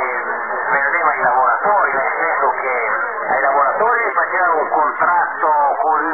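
A voice talking over a shortwave radio receiver, narrow and thin-sounding: cut off above and below, as on the 45-metre band, with no pauses.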